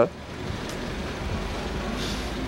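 Steady low vehicle rumble with a faint even hiss above it.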